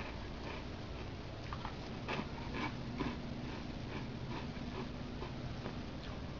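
A person eating crunchy cereal from a bowl: scattered faint crunches and clicks from chewing and the spoon, over a steady low hum.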